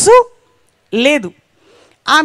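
Speech only: a woman speaking into a microphone, a short exclamation with rising pitch at the start, a pause, then another short utterance about a second in that rises and falls.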